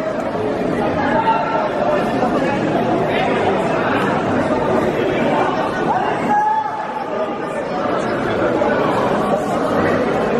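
Continuous hubbub of many people talking and calling out at once, echoing in a large sports hall.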